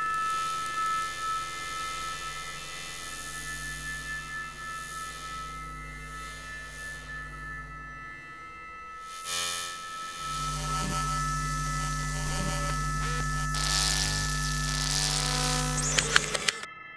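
Electronic drone sound design: several steady high tones over a hiss and a low hum, with the low drone swelling about ten seconds in.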